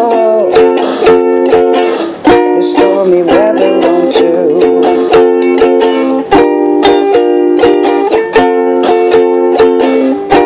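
Ukulele strumming chords in a steady rhythm, an instrumental passage of a song with no singing.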